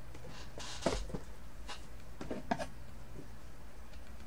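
Steady low electrical hum, with a short spoken word about a second in and a few faint, brief handling sounds, a phone and stylus being handled, a little later.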